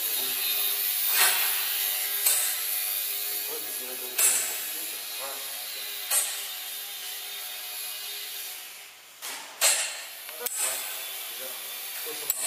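Small electric motor and propeller of a micro RC foam plane buzzing steadily in flight, with several sharp knocks at irregular intervals, the loudest about two-thirds of the way through.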